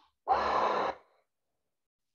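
A man's single loud breath, under a second long, taken while he holds a deep seated hamstring stretch.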